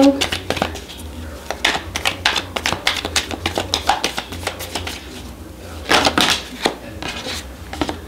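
A deck of tarot cards being shuffled by hand: a quick run of soft card flicks and slaps, with louder bursts near two seconds in and about six seconds in.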